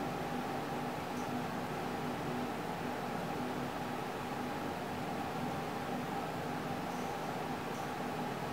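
Steady hiss with a low, even hum: room noise like a running fan, unchanging throughout.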